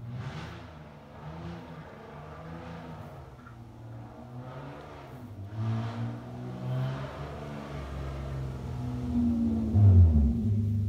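Motor vehicle engine running and revving, growing louder toward the end.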